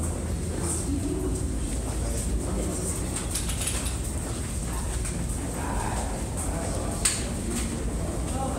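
Steady low rumble inside a rock tunnel in Hoover Dam, with a tour group's voices murmuring and their footsteps. A single sharp click about seven seconds in.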